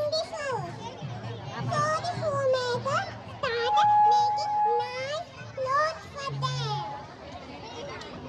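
Children's voices calling and chattering in a crowd, with music in the background.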